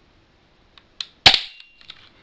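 A spring-powered, hand-cocked plastic 1911-style BB pistol fires one shot: a sharp snap about a second and a quarter in, with a couple of faint clicks just before it.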